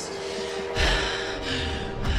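A person's sharp, breathy gasp about two-thirds of a second in, lasting under a second, over a low, held note of trailer music.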